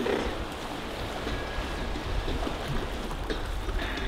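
Steady rush of a fast, riffled river flowing around a drifting raft.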